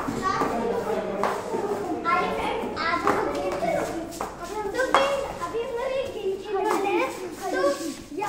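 Several children chattering and talking over one another as they gather to play.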